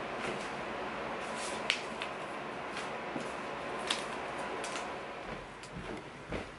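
Sheets of paper prints being handled and shuffled on a desk, with a few sharp clicks and taps over a steady background hiss; the hiss drops away near the end.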